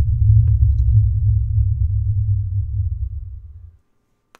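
Deep, loud rumble sound effect for a logo intro animation, steady at first and then fading away in the last second or so.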